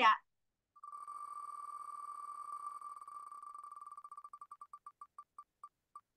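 Wheel of Names online spinner's tick sound effect as the on-screen wheel spins. About a second in, rapid ticks start, close enough to blur together, then slow steadily and spread out as the wheel decelerates, down to single ticks near the end.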